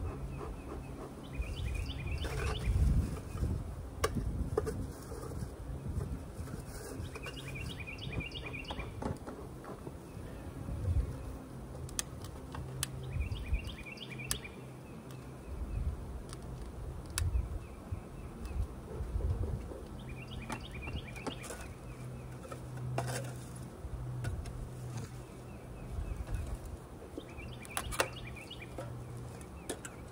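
Honeybees buzzing over an open hive, a steady low hum throughout. A bird calls in short repeated phrases every five to seven seconds, and there are a few sharp clicks.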